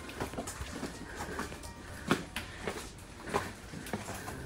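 Irregular footsteps and scuffs on the rocky floor of a lava tube, a handful of sharp steps at uneven intervals, the loudest about halfway through.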